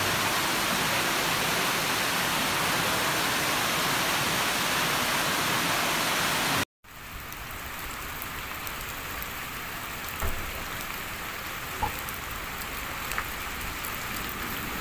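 Floodwater cascading down a station staircase, a loud steady rush. About seven seconds in it cuts sharply to a quieter, steady sound of rain falling on a flooded street, with a few brief knocks.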